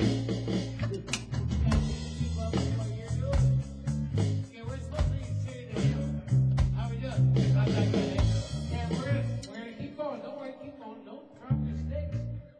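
A live band playing in a small rehearsal room: electric bass guitar, drums and voices. The song winds down about ten seconds in, and a single bass note sounds near the end.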